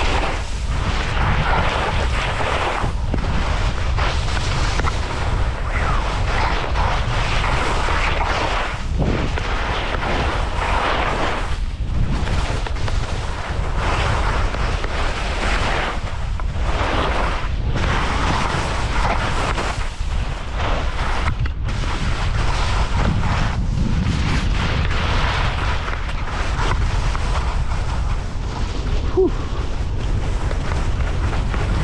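Wind buffeting the action camera's microphone in a steady low rumble while skiing downhill, with skis scraping and hissing over chopped-up snow in swells that come every second or two as the skier turns.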